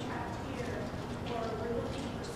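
A man's voice speaking off-microphone, distant and echoing so that the words are hard to make out.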